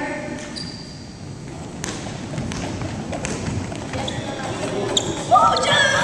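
Players' voices calling out in a large echoing gym, with a few sharp knocks from scooter hockey play on the wooden floor. There is a louder call near the end.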